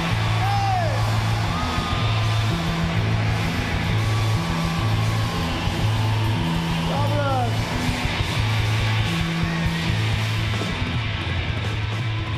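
Live rock band playing: electric guitar over a repeating bass-note pattern, with a singer's voice gliding over it. The sound dips slightly near the end.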